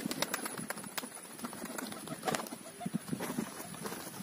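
Domestic pigeons, quiet with a few short cooing calls, amid scattered sharp clicks and rustles.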